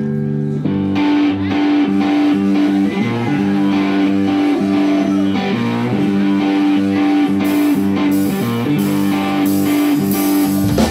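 Live blues-rock band led by a Stratocaster-style electric guitar playing a repeating riff over bass, with cymbals joining near the end.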